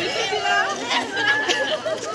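Overlapping chatter of several women's voices in a walking group, with no words clear.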